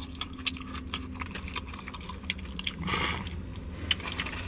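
A person chewing gravy-dipped french fries, with many small wet mouth clicks and a short breathy rush of noise about three seconds in.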